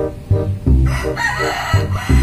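Rooster crowing from about a second in, over background music with a steady low beat.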